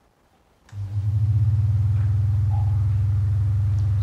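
Near silence, then about two-thirds of a second in, a click as the ESP8266-driven relay switches mains power on. A small electric desk fan starts at once and runs with a steady low hum.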